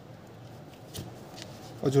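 Faint handling of a leather boot in the hands, the boot turned and its collar pulled open, with a short click about a second in.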